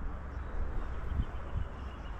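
Wind buffeting the microphone in a steady low rumble, with a couple of soft knocks from handling the flag and its metal pole.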